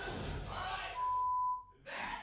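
A voice, then about a second in a single steady high-pitched beep lasting under a second, cutting off the speech: a censor bleep.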